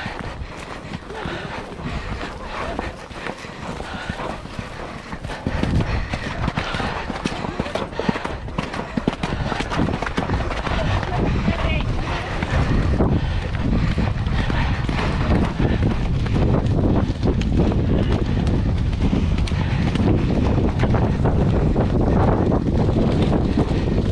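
A horse's hooves on the ground as it moves along, with people's voices around. From about six seconds in the sound grows louder, and from about thirteen seconds wind rumbles heavily on the microphone.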